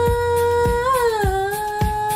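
A woman's voice holding one long sung note that slides down a little about a second in, over a pop backing track with a steady kick drum just under two beats a second.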